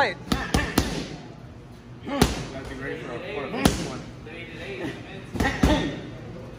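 Boxing gloves punching focus mitts in sharp smacks. There is a quick run of three right at the start, single hits about two and three and a half seconds in, and two more in quick succession near the end.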